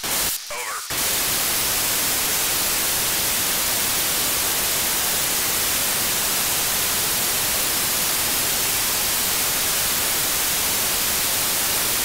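Loud, steady hiss of open-squelch static from a narrow-FM receiver tuned to the ISS 2 m downlink on 145.800 MHz, with no usable voice signal coming through. A few short broken bursts in the first second give way to an even rush of noise.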